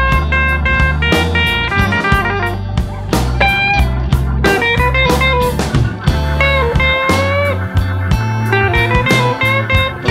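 Instrumental blues: an electric guitar plays lead lines with bent notes over a bass line and a steady drum beat.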